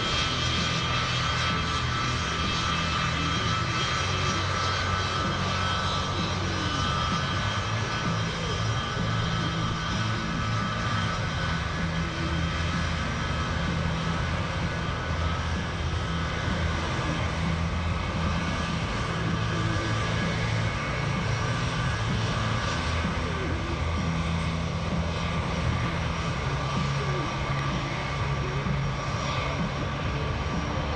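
C-17 Globemaster III's four Pratt & Whitney F117 turbofan engines running on the ground as the transport rolls along the runway: a steady jet rumble with a constant high whine over it.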